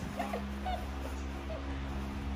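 Three short, high-pitched whimpers over a steady low hum.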